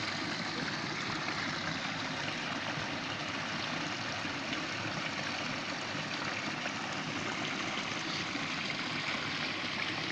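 Steady rushing and trickling of a mountain stream's flowing water, an even hiss with no breaks.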